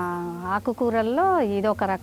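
A woman's voice speaking, with long drawn-out vowels and a rise and fall in pitch about a second in.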